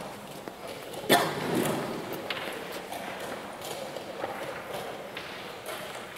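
A sharp knock of a wooden chess piece or a chess-clock button about a second in, then a smaller click a little after two seconds and a few faint ticks, over the steady murmur of a playing hall.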